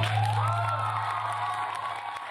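Audience beginning to clap and cheer, with one high cheer that rises in pitch over the first half second and is then held. Underneath, the backing track's last low note rings on and fades.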